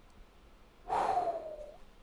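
A man's single breathy vocal reaction, starting about a second in: one falling, hoo-like tone that fades over about a second, a wordless sound of dismay at the sight of a badly damaged board.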